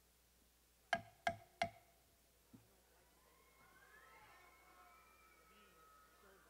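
Three quick, sharp strikes of the ringside timekeeper's signal, each with a short ringing tone, about a second in. A faint wavering whistle-like tone follows in the second half.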